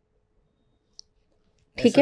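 Near silence broken by a single short, faint click about a second in; a voice then says a word near the end.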